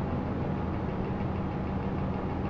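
A steady low engine hum, like a motor idling, with no change in pitch or level.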